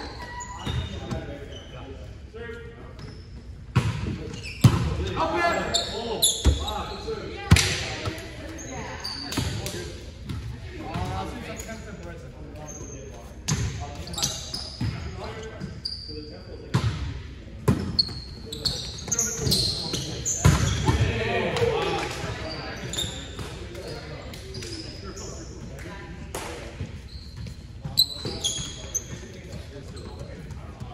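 Indoor volleyball play in a gymnasium: a ball being struck and bouncing on the hard court floor again and again, with sneakers squeaking and players calling out. Everything echoes in the large hall.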